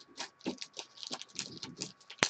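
Trading cards being handled: a quick, irregular run of light scratchy clicks and rustles as card stock slides and flicks against card stock.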